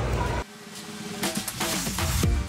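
Brief shop chatter cuts off abruptly about half a second in, and background music comes in: a drum build-up with falling sweeps, growing louder toward the end, leading into an upbeat dance track.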